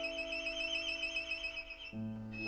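Violin holding one long high note with wide vibrato over a sustained piano chord; new low piano notes come in right at the end.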